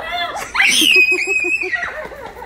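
A small child's high-pitched scream, held for about a second, over other voices.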